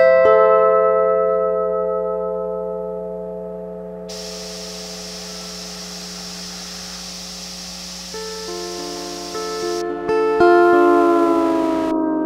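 Lap steel guitar played through the Organelle's Deterior looper and audio processor. A loud chord is struck right at the start and left to ring, dying away slowly. New notes come in about eight seconds in, and another loud chord near the end bends slightly in pitch. A steady low mains hum lies underneath, with a band of hiss from about four to ten seconds.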